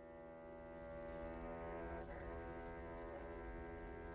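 Faint, sustained droning chord from the anime's soundtrack, held steady with a brass-like, foghorn-like tone, swelling gently over the first second or two.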